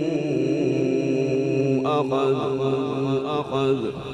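A male qari chanting a Quran recitation in the melodic tilawat style. He holds a long, wavering note, then about two seconds in rises into a higher, quickly ornamented run that ends just before the close.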